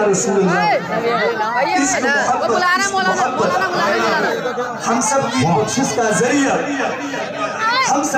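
A man's voice reciting a devotional naat through a PA system, with other voices overlapping it.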